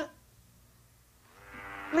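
A pause of near silence, then a faint held pitched tone swelling in over the last half second or so.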